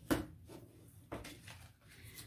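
Oracle cards being set down and tapped against a wooden tabletop: a sharp tap just after the start and a softer one about a second later, with faint card handling between.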